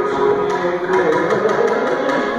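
Carnatic concert music: violin melody with a mridangam drum accompaniment, the drum giving a run of sharp strokes.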